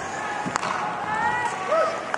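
Ice hockey arena sound during live play: steady crowd murmur, with one sharp clack from the play on the ice about half a second in and faint distant shouts after it.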